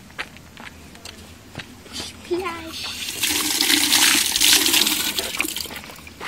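Water running from an outdoor standpipe tap onto hands and the concrete basin below, coming on loud about three seconds in and easing off near the end.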